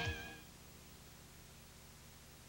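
The last held note of a beer-commercial jingle fades out in the first half second. A faint, steady low hum follows, near silence.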